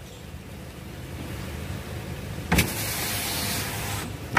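Car's driver-door power window motor running as the glass is lowered. About two and a half seconds in there is a click, and after it the sound gets louder.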